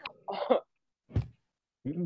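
A woman's laughter trailing off in short bursts, then one short cough about a second in; a man starts speaking at the very end.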